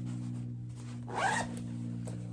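Zipper of a fabric project bag being pulled open in one short zip about a second in.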